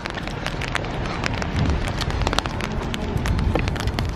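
Rain drops ticking on an open umbrella held just above the camera, dense and irregular, with a low rumble underneath.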